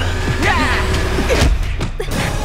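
Dramatic television background music over a low steady drone, with shouting and a couple of sharp hits from a scuffle about one and a half seconds in.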